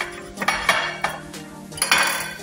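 Metal cutlery clinking and clattering against plates during food prep, in two short bursts: one about half a second in and one near the end.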